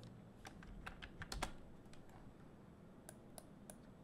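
Faint computer keyboard typing: scattered keystrokes of a short search word, a cluster in the first second and a half and a few more around three seconds in.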